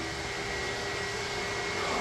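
Steady hum and hiss with a faint high whine and no distinct events: the running noise of a koi pond's water circulation system.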